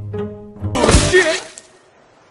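Soft plucked and bowed string notes, then, about three-quarters of a second in, a sudden loud crash sound effect that rings and dies away over about a second, laid over a giant panda falling off a tree stump.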